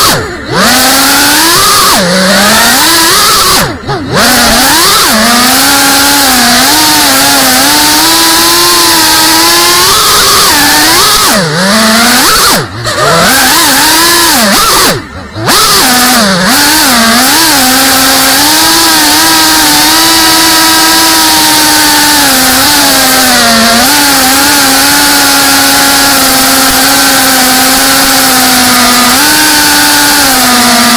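GEPRC CineLog35 3.5-inch ducted FPV quadcopter's brushless motors and propellers whining, heard from the camera mounted on the drone, the pitch rising and falling with the throttle. The whine drops out briefly on throttle cuts four times: just after the start, at about 4 s, and twice around the middle.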